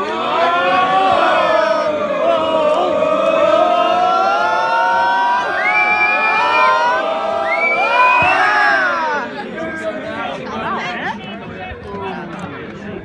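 Football crowd singing and chanting together, many voices holding and sliding long notes. The singing dies down about nine or ten seconds in.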